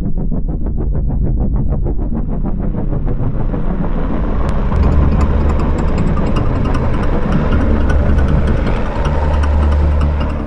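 A loud motor-like roar builds over a fast pulsing beat, about eight pulses a second, that fades within the first few seconds. A deep steady hum sets in about five seconds in.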